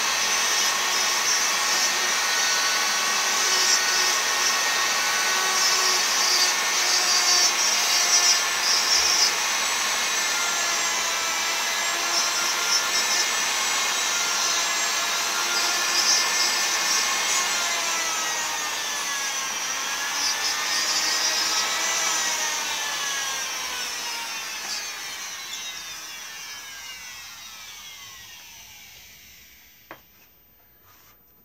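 Flexible-shaft rotary tool running at high speed with a steady whine and rasp as its bit carves a wooden stick handle. The speed dips and recovers a couple of times, then the motor is switched off and winds down in a long falling whine near the end.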